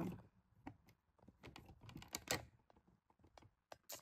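Faint, irregular light clicks and taps, a few scattered across the pause, the clearest about halfway through.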